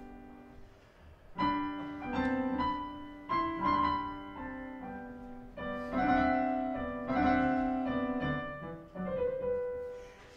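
Solo piano playing the introduction to a sung aria, struck chords and melody notes. The playing starts after a brief pause about a second in.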